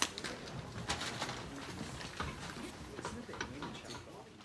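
Quiet cinema auditorium: low, muffled murmuring with scattered small clicks and rustles, several a second.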